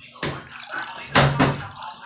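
Drink poured from a plastic bottle into a cup, the pour running steadily and briefly growing louder a little past halfway.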